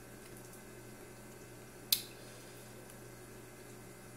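Baseball trading cards handled by hand over a faint room hum, with one short, sharp click about two seconds in.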